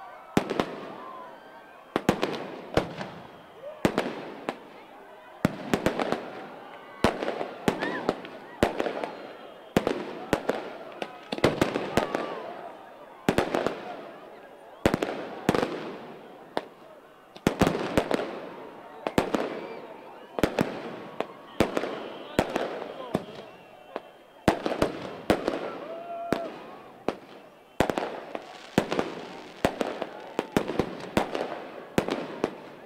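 Aerial fireworks going off in quick succession: sharp bangs about one or two a second, each trailing off in a crackling tail, with a crowd's voices beneath.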